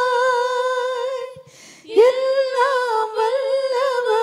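An elderly woman singing a Tamil worship song alone into a microphone, unaccompanied. She holds one long note, takes a breath about a second and a half in, then swoops up into a new note at two seconds and holds it with small wavering ornaments.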